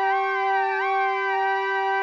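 Korg Mono/Poly analog synthesizer sounding one held note while a panel knob is turned: the pitch stays steady as the upper overtones waver and sweep up and down, giving a siren-like tone.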